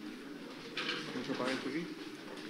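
Faint, indistinct chatter of several people talking away from the microphone in a room, with a short rustle about a second in.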